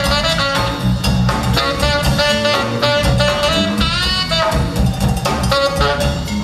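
Tenor saxophone soloing in short phrases over a live band's drums and bass, with one note bent upward about four seconds in.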